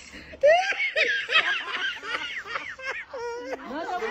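Men laughing hard together in rapid, high-pitched bursts of laughter, starting about half a second in after a brief lull.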